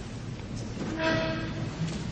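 A single held note from an orchestral instrument with a clear pitch, lasting about half a second in the middle, over a low background rumble.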